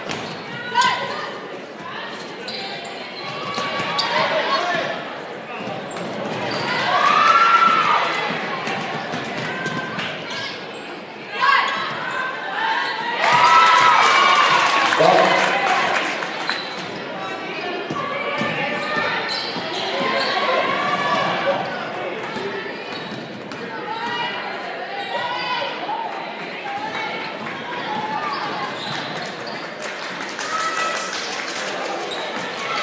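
A basketball being dribbled on a hardwood gym floor during play, with spectators' voices and shouts echoing in the large gym; the voices swell louder twice, about a quarter and halfway through.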